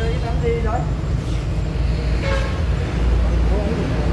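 A steady low rumble of motor-vehicle traffic, with short fragments of speech over it.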